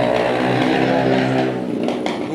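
A motor vehicle engine running steadily at an even pitch close by, dying away shortly before the end.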